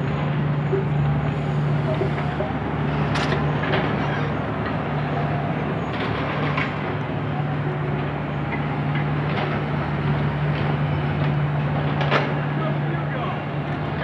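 Street traffic with a steady low drone from an idling truck engine, and voices of people walking by.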